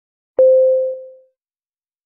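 A single electronic beep: one steady tone that starts sharply with a click a little under half a second in and fades out within about a second. It is the cue that starts the timed preparation period.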